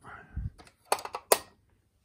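Handling noise from a hand at a plastic model's switch panel: a short rustle and a low bump, then two sharp clicks about half a second apart.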